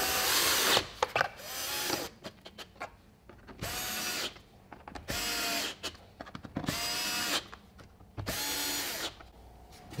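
Cordless drill-driver running in about six short bursts of under a second each, spinning up and winding down each time, as it drives screws into the plastic air filter housing. It is run gently on a low setting so the screws do not strip the plastic. Small clicks come between the runs.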